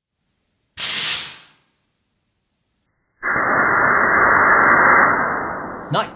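Compressed air from an air compressor blasts through a pipe to fire a straw: a sharp hiss about a second in that dies away within a second. A second, longer and duller rush of air follows a few seconds later, steady for over two seconds and fading near the end.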